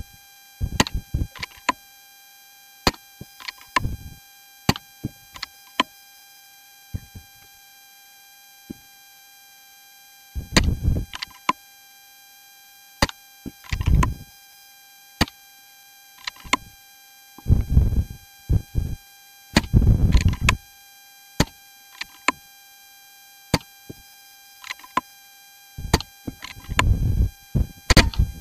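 Gusts of wind buffeting the microphone several times, over a steady faint high whine and scattered sharp clicks from a faulty microphone.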